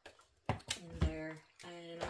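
A woman's voice speaking, starting about half a second in, with a short pause near the end.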